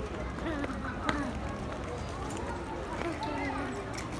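Street ambience: faint voices of people nearby, with a few sharp clicks typical of footsteps on stone paving.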